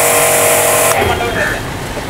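Portable electric pressure washer running, its motor whine under the hiss of the water jet, then cutting off about a second in.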